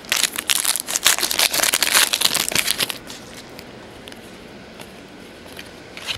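A 2009 Donruss Certified football card pack's foil wrapper being torn open and crumpled: dense crinkling and crackling for about three seconds, then only faint handling.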